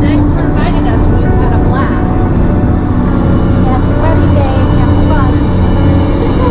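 Engine and road noise inside a moving vintage bus, a steady low drone, with passengers chattering over it.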